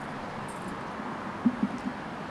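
Steady outdoor background noise in a pause, with a few brief faint low sounds about one and a half seconds in.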